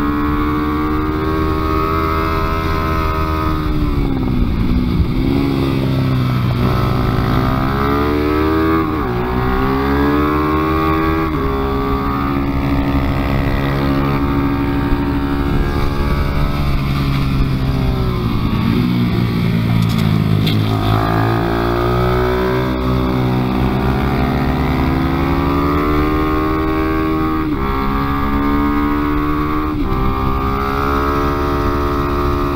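A small motorcycle engine heard onboard at racing speed. Its revs climb through the gears and then drop sharply when braking into corners, several times over, with wind rushing over the microphone.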